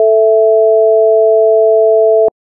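Two pure sine tones, 440 Hz and 660 Hz, held steady together as a just perfect fifth: the second and third harmonics of A 220 Hz.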